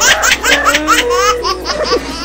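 High-pitched laughter in quick repeated peals, about seven a second, cutting off sharply at the end.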